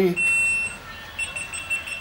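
A high electronic beep: one steady tone held for about half a second, then the same tone again, fainter and longer, from about a second in.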